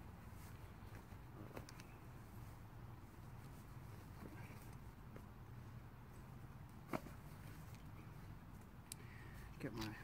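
Near-quiet outdoor background with a low steady hum and a few faint handling ticks, broken by one sharp click about seven seconds in. A man's voice starts right at the end.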